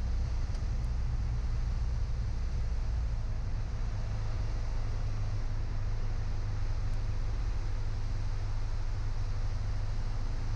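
Piper Cherokee 180's four-cylinder Lycoming engine running steadily in flight, heard inside the cockpit as a low, even drone with a faint hiss of airflow above it.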